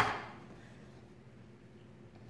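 A short hiss that fades at the very start, likely the end of a spoken word, then quiet room tone.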